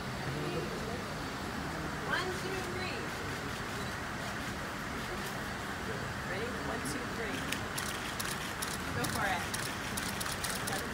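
Low background chatter of people talking over an even hum of terminal room noise, with a few faint clicks near the end.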